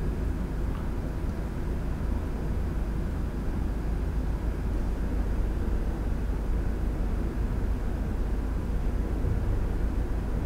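A steady low rumble of background noise, even throughout, with no distinct events.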